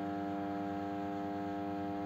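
A steady electrical hum: a buzz of many even tones holding one unchanging pitch and level.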